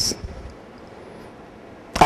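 Quiet, steady room tone with a faint hiss during a pause in a spoken talk, opening with the trailing hiss of the last word.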